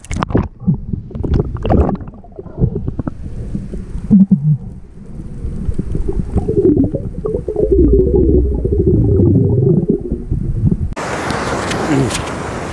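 Muffled underwater sound from a camera held beneath the sea: low rumbling, bubbling and knocks as the diver moves. About a second before the end it switches suddenly to open-air noise of waves and wind.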